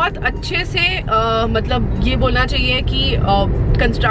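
A woman talking inside a moving car, over the steady low rumble of the car's cabin.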